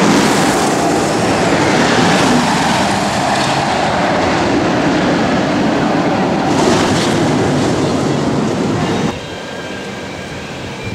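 Steel roller coaster train rumbling along its track, a loud steady rumble that cuts off sharply about nine seconds in.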